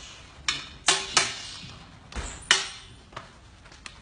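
Eskrima sticks striking each other in sharp clacks: three in quick succession in the first second and a bit, another loud one about two and a half seconds in, with lighter taps between.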